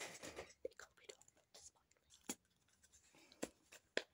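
Near silence: faint scattered clicks and rustles, with a soft spoken word about halfway through.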